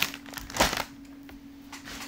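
Plastic grocery packaging crinkling and rustling as items are taken out of a shopping bag, loudest in the first second, over a faint steady hum.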